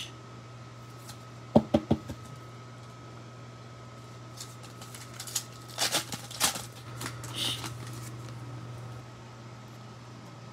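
Trading cards being handled: a few sharp clicks of a card and plastic top loader at about a second and a half in, then the crinkle and tear of a foil card pack being ripped open about six seconds in. A steady low hum runs underneath.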